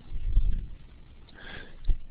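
A person's breath on a close microphone: a short low puff of air early on, then a faint sniff about a second and a half in, and a small click just before the end.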